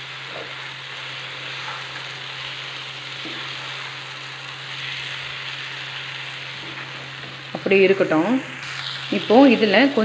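Prawns, onion and tomato with spice powder frying in a nonstick kadai, sizzling steadily as they are stirred with a metal spatula.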